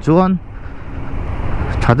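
Motorcycle riding noise, engine and wind rumble, growing louder over about a second, between bits of a man's talk.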